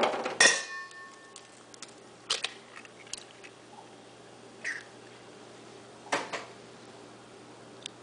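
An egg knocked against the rim of a stainless-steel mixing bowl, a sharp crack about half a second in that leaves the bowl ringing briefly. A few faint taps and clinks follow.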